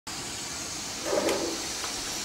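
Water running and hissing steadily from a school toilet that has been flushed over and over and is overflowing, with a brief louder sound about a second in.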